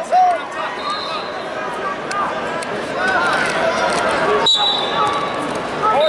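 Arena crowd noise at a wrestling tournament: many voices shouting and talking over each other. A steady high whistle-like tone comes in a little past halfway.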